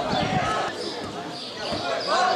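Footballers' voices calling out during open play, with a couple of dull thuds of the ball being kicked, one near the start and one near the end.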